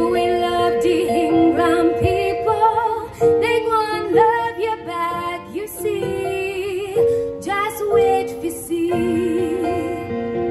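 A woman singing a slow song with vibrato, backed by a live band and amplified through stage speakers.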